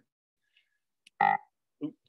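A person's short, croaky hesitation sound, "uh", about a second in, followed by a shorter vocal sound near the end; a faint click just before the "uh".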